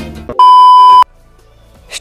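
Television test-card tone: one loud, steady, high beep of about two-thirds of a second that cuts off sharply. Before it, a brass swing-music clip stops about a third of a second in.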